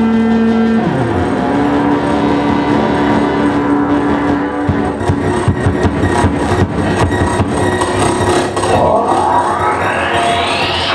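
Live electronic noise music, loud and steady, built from synthesized tones. A low tone slides down about a second in, then a new tone holds until nearly five seconds. Dense clicks and crackle follow, and a rising sweep starts near the end.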